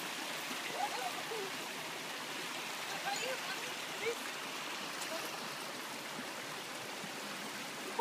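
Shallow rocky creek running: a steady rush of water over stones.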